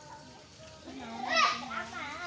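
Children's voices talking and calling out, with one loud, high-pitched shout about one and a half seconds in.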